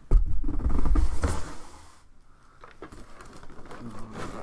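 A large cardboard retail box being lifted out of a shipping carton and handled: a heavy low bump and scraping for about a second and a half, then softer cardboard rustling that dies away by the middle.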